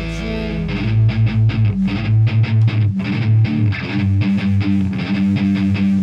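Live rock band music without singing: a held chord rings out, then about a second in an electric guitar takes up a picked riff of short, repeated low notes over bass.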